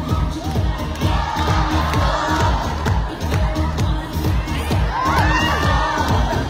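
Loud dance music with a heavy, steady beat, under a crowd cheering and shouting, the shouts swelling about five seconds in.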